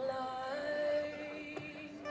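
A woman singing live with light plucked-string accompaniment. Her voice settles into a long, steady held note about half a second in.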